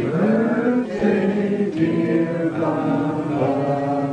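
A group of voices chanting together in unison, with long held notes that slide slowly in pitch.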